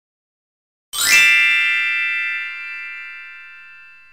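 A bright chime struck about a second in: several bell-like tones sounding together as one chord, then ringing on and fading slowly over about three seconds. It is the opening sound for an animated title card.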